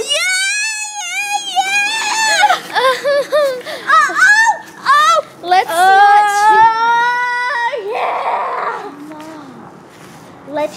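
A girl singing wordless, very high notes in a shrill, wavering voice, sliding up and down, then holding one long high note for about two seconds before it breaks off. A short noisy sound follows.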